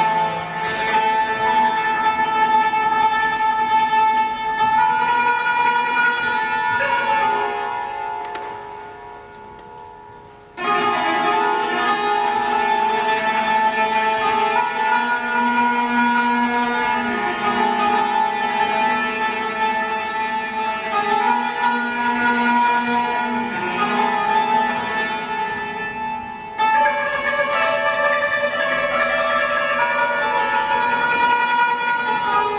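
Persian santur (hammered dulcimer) played solo in a Persian classical dastgah, with fast, ringing struck notes. The playing fades to a hush about eight seconds in, then starts again suddenly, with another short pause late on.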